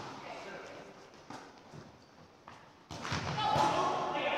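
Indoor volleyball rally in an echoing gymnasium: a few light knocks, then a sharp smack of the ball being hit about three seconds in, followed by players calling out.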